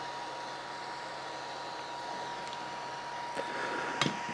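Steady faint electrical hiss with a thin, constant whine from the running plasma-generator kits on the bench. A faint click or two comes near the end, from the glass lamp being handled.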